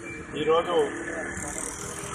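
A man's voice, briefly, about half a second in, over steady street noise with road traffic running underneath.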